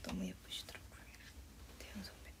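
A young woman's voice speaking very softly under her breath: a short voiced sound right at the start, then a few brief whispered fragments.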